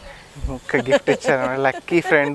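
A person's voice making drawn-out vocal sounds without clear words, starting about half a second in.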